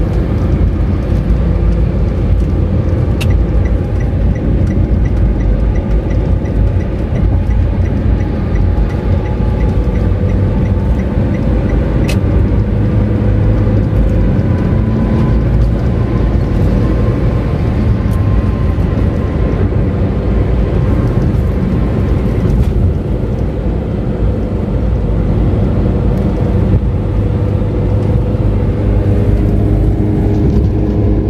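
Steady road and engine noise heard inside a moving car's cabin, mostly tyre rumble from the toll road's concrete pavement, with the car reaching smoother asphalt near the end. Two brief sharp clicks come about three and twelve seconds in.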